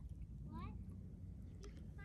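Low steady rumble with a faint, distant child's voice calling out once, briefly, about half a second in.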